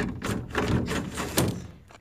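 Series of knocks and thunks from the greenhouse's corrugated plastic door panel being handled, the sharpest about one and a half seconds in.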